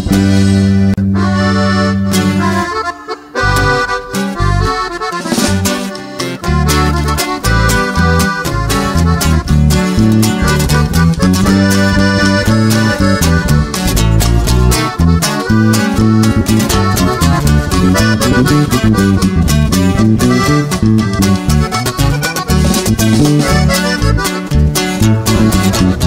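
Norteño band playing an instrumental passage with accordion lead over guitar and bass. A held final chord ends about two and a half seconds in, and after a brief break the band starts a new tune with a steady beat.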